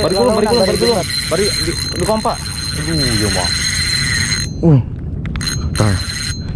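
Spinning reel's drag buzzing in a steady high whine as a hooked fish pulls line against the bent rod. It cuts out about four and a half seconds in and starts again briefly near the end, with short wordless exclamations from the angler over it.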